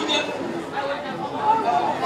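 Crowd chatter: many people talking over one another at once.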